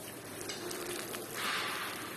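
Table sounds of eating by hand: plastic-gloved hands pulling apart food on a plate, with faint clicks and a brief rustle about a second and a half in.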